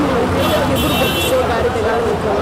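A voice speaking over busy street background noise, with a brief high-pitched steady tone about half a second in that lasts about a second.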